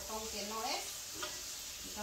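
Diced potatoes frying in oil in a skillet, a steady sizzle, as a utensil stirs them around the pan. A woman's voice is heard briefly at the start.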